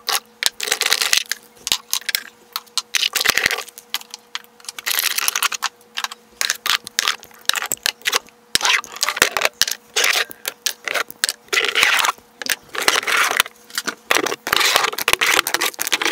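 Glass and plastic skincare jars and tubes clattering and clicking against each other and scraping along a drawer bottom as they are lifted out by the handful, in a busy run of knocks with short scraping stretches.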